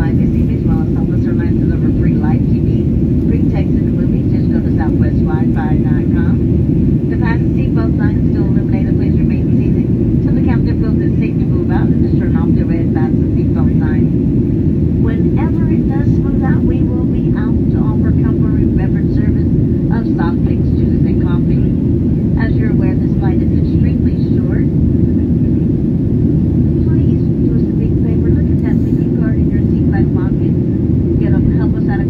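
Steady cabin noise of a Boeing 737 airliner in flight: engines and airflow making a loud, even low rumble, with faint passenger chatter underneath.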